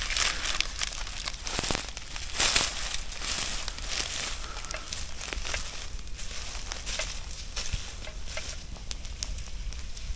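Dry grass and fallen palm leaves crackling and rustling as a burning palm-leaf torch is dragged through them and sets them alight. Dense, irregular crackles throughout, with a louder burst about two and a half seconds in.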